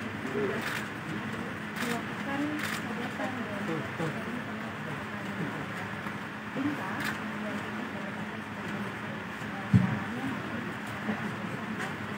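Indistinct background voices and murmur over a steady low hum, with several short sharp clicks and one dull thump near the end, the loudest sound.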